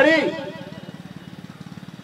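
A small engine running steadily in the background, a low, evenly pulsing hum, with the end of a man's amplified word at the very start.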